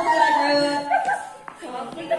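Voices of a group of people calling out without clear words, with one long held cry from about half a second to one second in, then growing quieter.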